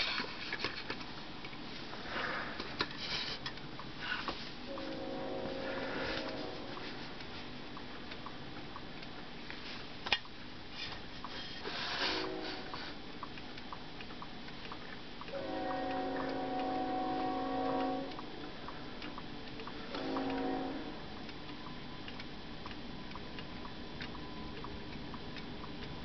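Solar-powered dancing Christmas figurines ticking faintly as they rock, with one sharp click about ten seconds in. Steady held notes, one to three seconds long, sound in the background about five, fifteen and twenty seconds in.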